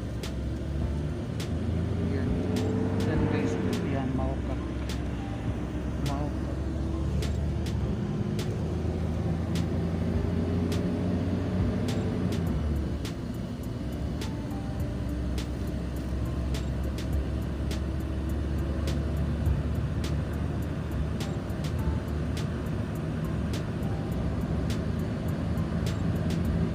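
A car's engine and road noise heard from inside the cabin while driving: a steady low rumble with tyre hiss. The engine note rises and falls twice in the first half.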